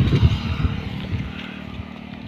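Low, uneven rumble of wind buffeting the microphone, strongest at the start and dying away.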